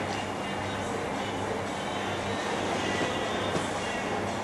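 Steady background noise with a low hum, without any distinct event.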